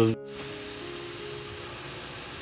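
Minced leek and lemongrass frying in oil in a wok, giving a steady, even sizzle, with soft background music of held tones underneath. The sound cuts out for a moment just after the start.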